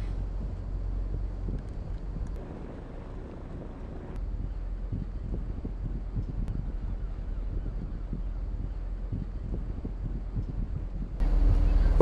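Waterside ambience on a busy harbour river: wind buffeting the microphone over a low rumble of boat engines and water. The low rumble grows louder near the end.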